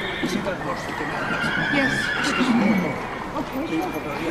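A horse whinnying in one long call about a second in, over the chatter of many voices.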